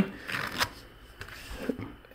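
Handling noise from hands moving flash drives in a soft zippered case: faint rustling and a few light clicks, with a dull low bump about a second and a half in.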